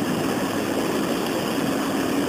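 A steady, even background noise like a constant hum and hiss, with no distinct events.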